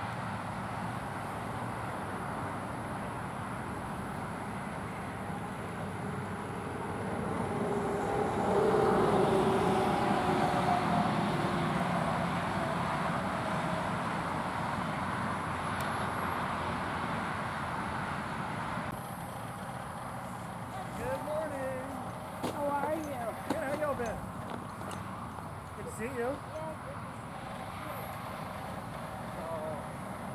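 Bucket truck's engine running steadily as the boom raises the bucket, growing louder for several seconds about a third of the way in. Distant voices talk in the second half.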